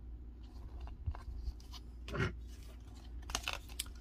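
Cardstock sticker sheets being handled and shuffled: a scatter of short crisp paper rustles and crinkles, the loudest about two seconds in and several more near the end, over a low steady hum.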